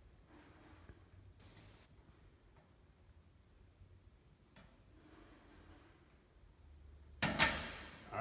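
Dial combination padlock on a metal locker being turned: a few faint clicks from the dial, then, a little before the end, a sudden loud metallic clack as the lock is pulled open.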